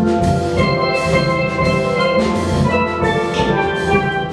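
Steel band playing: many steel pans struck in a quick, steady rhythm, their notes ringing over one another, with drums underneath.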